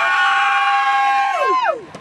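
A person in the audience yelling a long, drawn-out cheer, "Go!", for a graduate. It is held loud on one steady pitch, then the voice drops off a little before the end.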